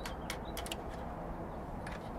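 A few faint metallic clicks of hex nuts being threaded by hand onto the main breaker's mounting bolts, over a low steady background hum.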